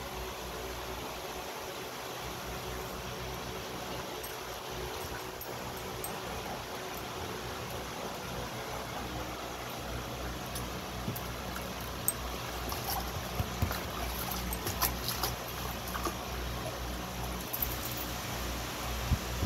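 Water sloshing and splashing in a shallow plastic tub as a dog wades and paws about in it, over the steady hum of a fan. Sharper splashes come now and then in the second half.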